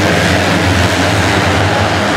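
A full starting gate of 250cc motocross bikes revving together at the start of a moto, a loud, steady drone of many engines at once.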